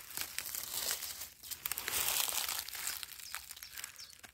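Dry fallen leaves and clothing rustling and crackling close to the microphone as a person shifts while sitting on the forest floor, with irregular small crackles throughout.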